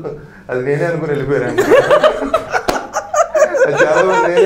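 A man talking animatedly with laughter mixed in, and one short sharp tap partway through.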